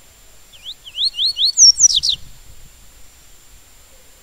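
A papa-capim seedeater (Sporophila) singing the tui-tui song type: a quick run of about five rising whistled notes, then three louder notes sliding steeply down, the phrase lasting about a second and a half.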